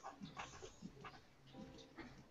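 Near silence over a video-call line, with a few faint, short sounds and a low hum.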